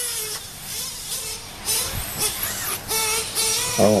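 Radio-controlled truggies racing: a nitro engine's high-pitched buzz and an electric motor's whine, rising and falling in pitch as they are throttled on and off.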